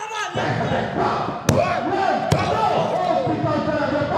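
Two sharp impacts on a wrestling ring, about 1.5 and 2.3 seconds in, the second soon after the first, with voices shouting throughout.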